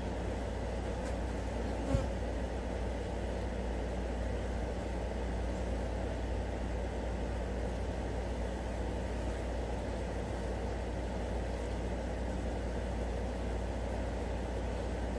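Steady buzzing of many flies over a low background rumble, with a single brief knock about two seconds in.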